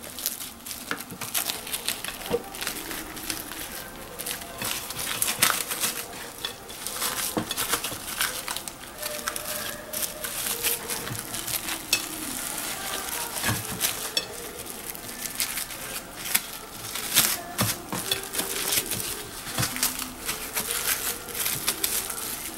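Plastic cling wrap crinkling and crackling in irregular bursts as hands fold it, together with a leaf, around a fried beef patty.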